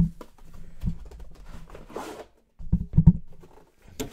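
A white cardboard box being slid off and a hard card case handled on a table: scattered scraping and clicks with dull thumps, the loudest a close pair about three seconds in.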